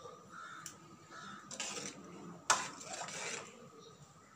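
Metal ladle stirring thick sambar in an aluminium pot, scraping and clinking against the metal, with one sharp clank about two and a half seconds in.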